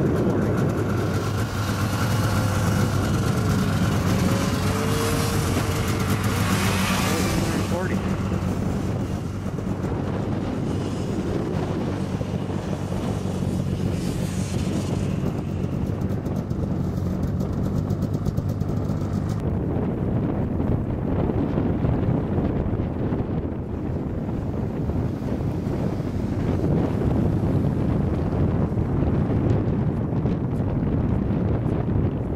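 Snowmobile engines idling with a steady low hum that cuts off about two-thirds of the way through, under wind buffeting the microphone. The wind comes in a loud rush around six to eight seconds in.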